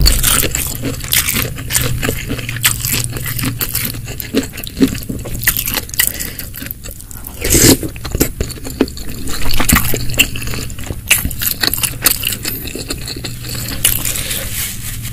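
Close-miked eating sounds: chewing of spicy seblak with snow fungus, full of small crackles and clicks, with a wooden spoon scraping a glass baking dish. One louder sound comes about halfway through.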